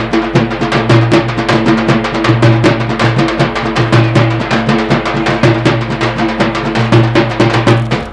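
Instrumental interlude between sung verses of a Banjara folk song: fast, steady drumming over a repeating bass line and held notes.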